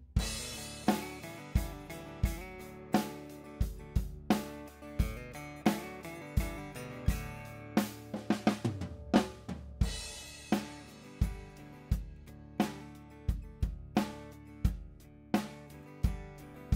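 Multitrack playback of a recorded drum kit (kick, snare, hi-hat and cymbals) playing a steady beat at 87 beats per minute, with direct-input acoustic guitar chords and a single-note riff underneath.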